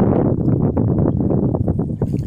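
Wind buffeting the phone's microphone: a loud, rough, uneven rumble.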